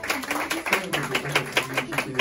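A small audience clapping, dense and irregular, as the live song ends, with a voice faintly under it.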